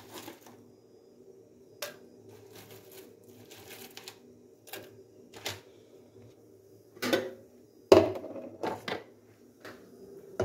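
Dried hibiscus crackling and rustling as it is scooped by hand from a plastic tub and dropped into a plastic cup, with scattered light clicks. A few sharper knocks come about seven and eight seconds in.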